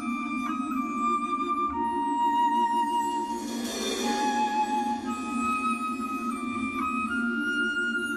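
Wind orchestra playing a slow melody of long held woodwind notes, led by the clarinets, over sustained low chords. A brief cymbal swell rises and fades just past the middle.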